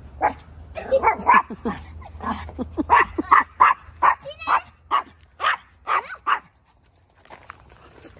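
Small dog, a Pomeranian, barking in a fast run of sharp barks, two or three a second, for about six seconds before stopping.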